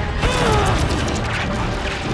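Action-film sound effects: a mechanical clatter of clicks and a loud downward-sliding screech starting about a quarter second in, over the film's background score.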